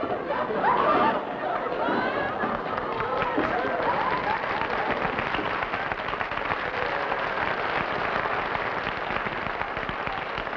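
Live studio audience laughing and clapping. The laughter is loudest in the first seconds and settles into steady applause that fades slightly near the end.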